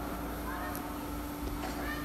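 Faint background voices over a steady hum.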